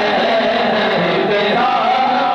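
A man singing a devotional chant (naat) into a microphone, with held notes whose pitch bends and wavers without a break.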